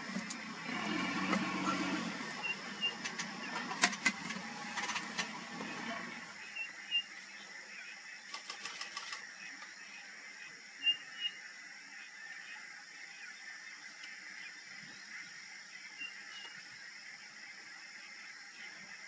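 A vehicle engine running low for about the first six seconds, then falling away. It leaves a steady high-pitched background hum with a few short, high chirps and occasional faint clicks.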